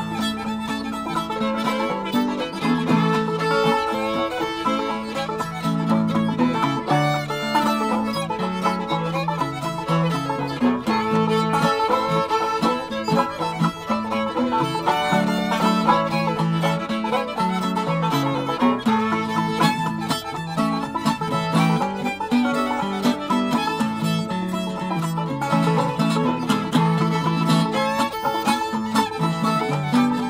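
Old-time string band playing a tune without pause: fiddle leading, with banjo and a flatpicked archtop guitar, the guitar walking a moving bass line under the melody.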